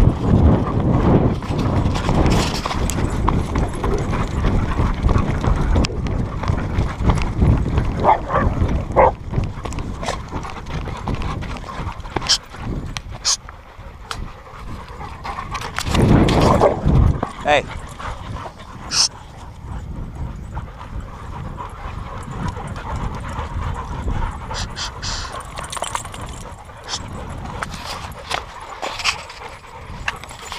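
A pack of excited dogs running on a dirt trail around a walker. Paws and footsteps scuff the dirt, busiest in the first ten seconds or so, and a few short, high dog cries break through.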